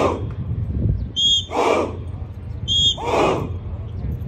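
A drill whistle blown in short blasts, each answered about half a second later by a large group of martial-arts trainees shouting in unison, in a steady cycle about every one and a half seconds: a shout right at the start, then two whistle-and-shout pairs.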